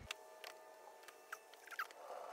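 Faint, scattered light clicks and a couple of short squeaks from gloved hands handling a wooden sculpting tool on wet epoxy putty, over a faint steady hum.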